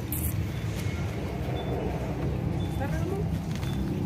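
Steady low rumble of a road vehicle on the move, with a brief click near the start and faint snatches of voice around the middle.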